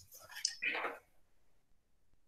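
A person speaking softly under the breath, half-whispered, for about the first second, then quiet room tone.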